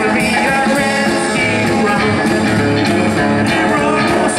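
Live rock and roll band playing: strummed acoustic-electric guitar over upright bass, with a man singing into the microphone.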